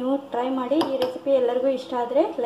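A steel ladle clinking against a steel kadai of thick egg curry: a few sharp metallic clinks as the ladle is moved and lifted from the pan.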